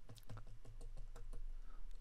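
Faint, irregular clicking of computer input, a dozen or so quick light clicks, over a faint steady low hum.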